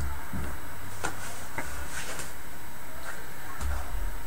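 A few faint, scattered clicks and taps of a hand handling equipment on a desk, over a steady low hum and hiss.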